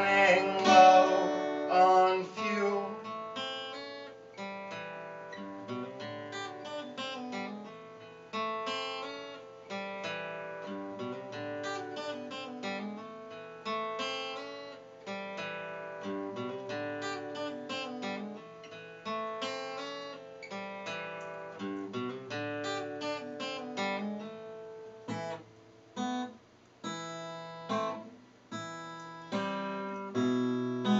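Solo steel-string acoustic guitar played without singing: loud at first, then a quieter passage of picked notes and chords that thins toward the end to separate notes with short gaps between them.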